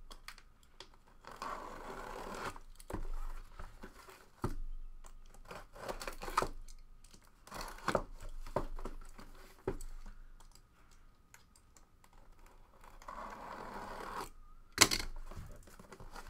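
Tape on a cardboard box being cut and torn open, with rustling stretches about a second in and again near the end, and scrapes and knocks as the box is handled; a sharp knock near the end is the loudest.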